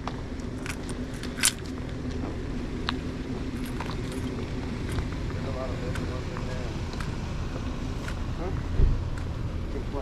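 Outdoor street ambience: a steady low rumble with faint distant voices and scattered sharp clicks, and a single low thump near the end.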